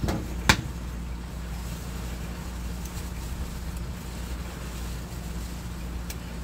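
A steady low hum, with two sharp clicks in the first half-second, the second one the loudest.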